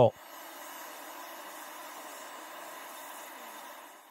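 60 W JPT MOPA fiber laser engraving a coin: a steady hiss with a faint thin whine as the beam removes metal. It fades out shortly before the end.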